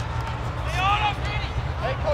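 Distant shouting from people across the field, one or two drawn-out calls about a second in, over a steady low rumble.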